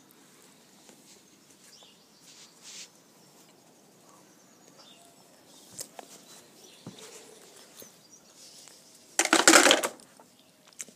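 Faint background with a few small clicks, then, about nine seconds in, a loud burst of rustling noise close to the microphone lasting under a second.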